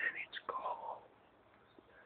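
A person whispering briefly for about the first second, then low room noise.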